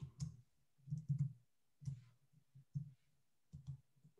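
Faint, irregular clicks from a computer mouse and keyboard, about eight of them spread over a few seconds.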